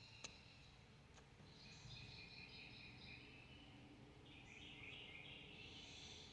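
Near silence with faint birds chirping in the distance: short trills about two seconds in and again near the end.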